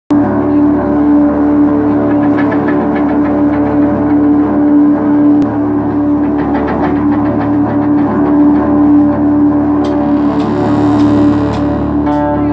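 A live stoner-rock trio of electric guitar, bass guitar and drums playing loud, with one droning note held throughout. A cymbal wash comes in over the last couple of seconds.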